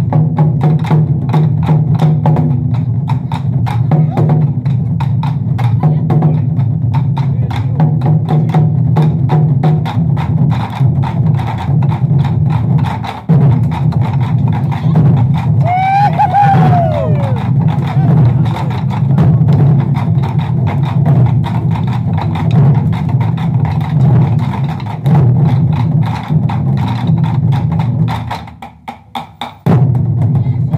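Taiko drum ensemble: many barrel drums struck with wooden sticks in a fast, dense, steady rhythm, heavy in the low drum tones with sharp stick clicks on top. A short voice call rises and falls in pitch about halfway through, and the drumming almost stops for about a second near the end before coming back in.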